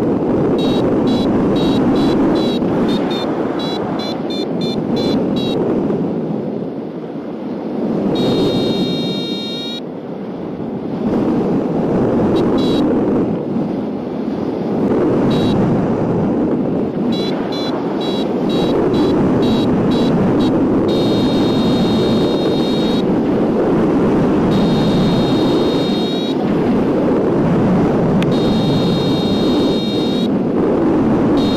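Wind rushing over the microphone of a hang glider in flight, with an electronic variometer beeping in quick runs of short high tones that at times run together into longer held tones.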